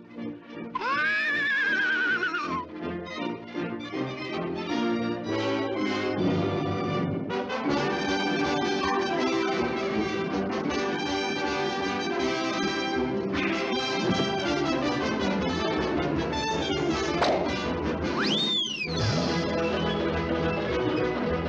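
Orchestral cartoon score with brass to the fore: a wavering, warbling tone about a second in, then trumpets and trombones playing full held chords. A quick swooping glide sounds near the end.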